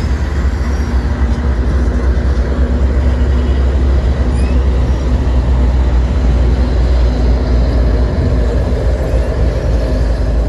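CSX diesel-electric freight locomotives passing at close range: a loud, steady low engine rumble with a held hum above it.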